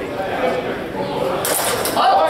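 Murmuring voices in a large hall, with a short burst of high hiss about one and a half seconds in.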